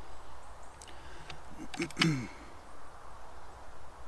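FX Impact M3 PCP air rifle being loaded: a few small metallic clicks as the side lever is cycled to cock it and chamber a pellet, the loudest click about two seconds in, together with a short murmur from the shooter.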